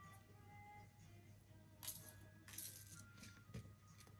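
Faint background music of soft single held notes, with a few light clicks and rustles about two and two-and-a-half seconds in as jewellery boxes and paper gift bags are handled.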